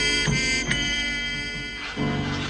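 Soundtrack music: a few plucked-string notes, then a held chord that fades slightly before the next chord comes in near the end.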